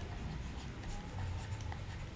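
Stylus writing on a pen tablet: faint scratches and small taps of the pen strokes, over a low steady background hum.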